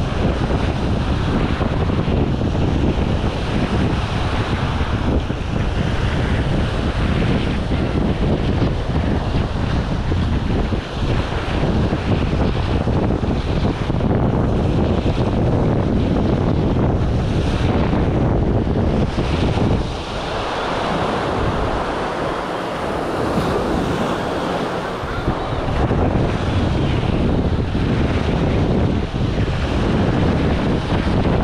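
Small waves breaking and washing up on a sandy shore, mixed with wind rumbling on the microphone. The wind rumble drops away for a few seconds about twenty seconds in, leaving the wash of the surf.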